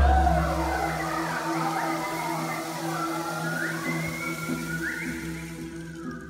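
Mixed choir singing: a steady held low drone under higher voices that repeatedly slide upward in whooping glides. A deep thud is heard at the very start.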